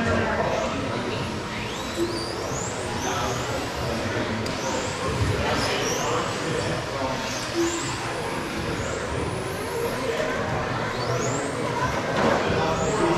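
Electric RC touring cars racing on an indoor carpet track: their brushless motors give short high whines that rise in pitch again and again as the cars accelerate, about a dozen times. The whines sit over a steady background of voices and hall noise.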